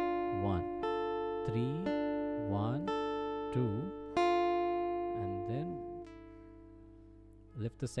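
Steel-string acoustic guitar picking a D minor triad one note at a time (D, F and A on the top three strings), the notes ringing into one another. The last note fades out over the final two seconds.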